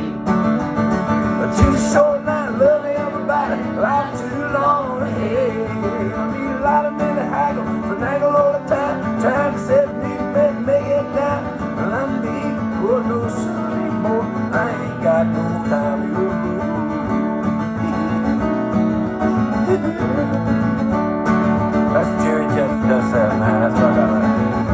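Solo acoustic guitar playing an instrumental break, steady strumming under picked melody lines.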